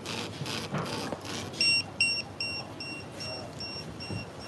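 Restaurant guest pager on a wooden table going off to signal that a food order is ready. It gives an evenly pulsing buzz, then from about a second and a half in a short, high-pitched beep repeats about two and a half times a second.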